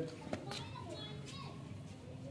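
Faint voices in the background, with a light click about a third of a second in.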